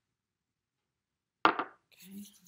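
Silence, then about one and a half seconds in a single short, sharp knock that dies away quickly, from handling a small glass essential-oil bottle.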